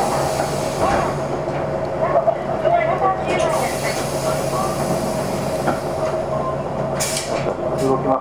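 Cabin sound of a 2013 Hino Blue Ribbon II city bus standing still, its four-cylinder diesel idling: a steady low hum with a constant whine over it, and a brief hiss about seven seconds in.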